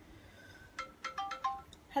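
Mobile phone ringtone: a quick run of short electronic notes at changing pitches, lasting about a second.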